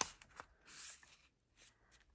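Faint pencil-and-paper handling on a sheet of cardstock: a sharp tap of the pencil tip at the start, a lighter tap just after, and a soft brushing scrape of paper a little before the middle.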